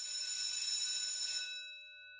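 Bell-like chime sound effect: several high ringing tones swell in together and hold, then fade out near the end. A few of the tones linger faintly.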